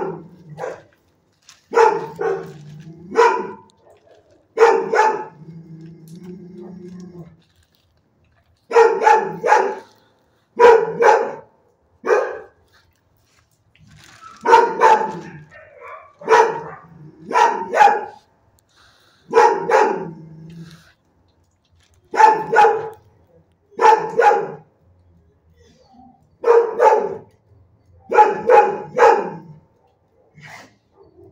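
Dog barking loudly in bursts of two or three barks, with short pauses between bursts, over and over.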